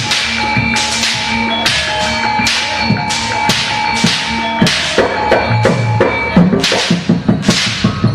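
Live Javanese jaranan ensemble music from Kediri: sustained high tones over a steady beat of sharp, ringing strikes about twice a second. Low drum strokes grow busier near the end.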